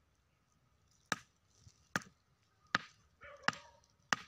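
Four sharp knocks, about one every 0.8 seconds, of a hand-held object struck down onto a large stone.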